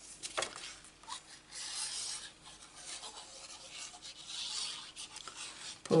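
Cardstock being handled: card sliding and rubbing against card and the work surface in a few soft swells, with a couple of light taps.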